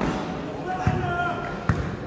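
A basketball bouncing twice on the court surface, about a second apart, over players' voices.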